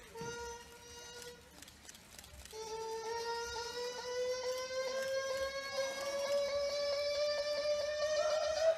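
A young man's very high singing voice: a short held note, then after a gap a long sustained note that slowly rises in pitch and wavers near the end.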